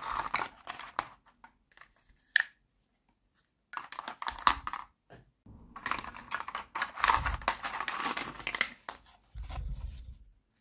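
Hollow plastic toy kitchen pieces handled by hand: rubbing, rattling and knocking against each other and the mat in three bursts, with one sharp plastic click a little over two seconds in and a dull thump near the end.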